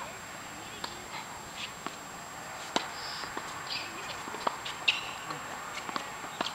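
Tennis rally on an outdoor hard court: a series of sharp knocks from the ball striking rackets and bouncing on the court, along with players' footsteps.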